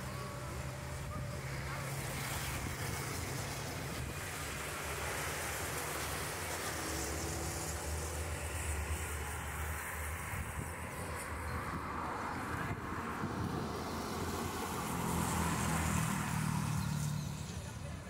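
Steady road traffic from cars on a city avenue. It grows louder near the end as a vehicle passes close by.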